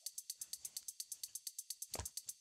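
Faint background music carried by a fast, even high ticking, about ten beats a second.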